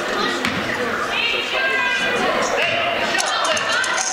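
Basketball being dribbled on a hardwood gym court, with players' and spectators' voices in the background.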